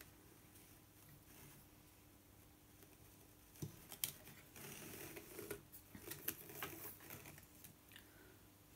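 Faint handling sounds of weaving on a frame loom: yarn being worked over and under the warp threads by hand, light rustling with a few soft clicks, beginning about halfway through.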